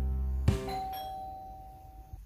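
Doorbell chime ringing once about half a second in, a single tone that fades away over about a second and a half, over the fading tail of held music notes.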